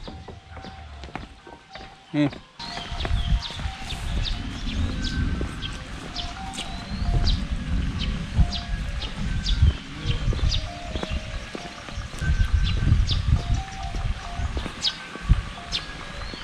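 Birds chirping over background music of short melodic notes, with a brief knock about two seconds in and a steady low rumble on the microphone after it.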